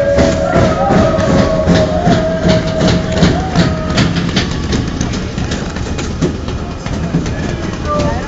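Group of football ultras chanting together inside a moving minibus, with repeated knocks and a low vehicle rumble underneath. The sung note fades out about halfway through, leaving the knocks and rumble.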